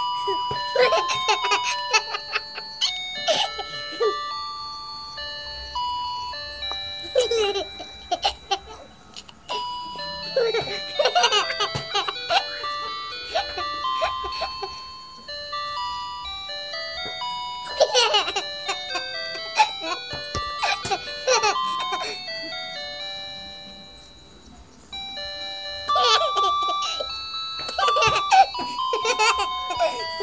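A simple electronic jingle of plain beeping notes plays throughout, in the style of an ice cream van tune, broken every few seconds by short bursts of a high voice, such as a baby's giggling.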